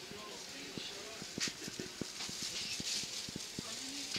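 Indistinct background voices of people talking, with a run of soft, short low taps at an irregular pace.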